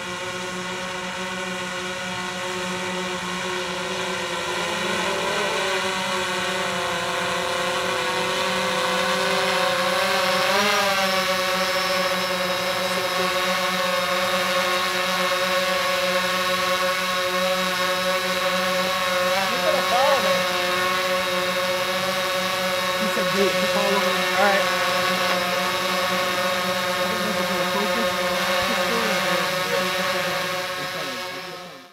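DJI Phantom 4 quadcopter's propellers humming steadily in flight, growing louder over the first ten seconds. The pitch wavers briefly about ten seconds in and again around twenty seconds in.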